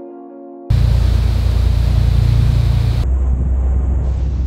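Piano music is cut off about half a second in by a loud, steady rush with a deep rumble: a boat underway on the open ocean, its engine and the wind and water on the microphone.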